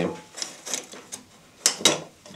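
Light metallic clicks and clinks from the steel parts of a body file (carrosserievijl) being handled on a wooden workbench. Two sharper clicks come close together near the end.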